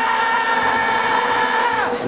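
A man's long, held yell at one high pitch that slides down and breaks off near the end.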